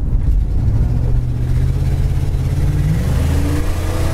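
1968 Pontiac GTO's 400 four-barrel V8, heard from inside the cabin while driving: a steady low drone that rises in pitch about three seconds in as the throttle opens and the automatic transmission kicks down.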